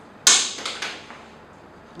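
Marker writing on a whiteboard: a sharp, high scratching stroke about a quarter second in, followed by a few quicker strokes that fade out.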